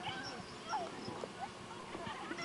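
Distant children's voices: a few short shouts and squeals that rise and fall, over outdoor background hiss.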